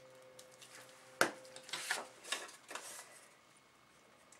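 A sharp click about a second in as the glue stick is put down, then a few brief rustles of a sheet of white paper being picked up and laid over a glued cardboard spine.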